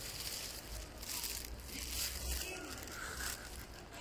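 Irregular crackling, rustling noise on the microphone with a low rumble underneath, over outdoor street background.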